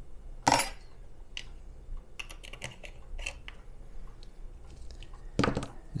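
Kitchen utensil clatter: a metal measuring spoon clinks sharply against a glass measuring cup about half a second in, followed by scattered light taps and clicks of items being handled on a countertop and a louder knock near the end.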